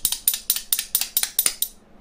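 Two metal spoons held back to back in one hand, played against the thigh: a quick, even rhythm of bright metallic clacks, about six or seven a second, that stops shortly before the end.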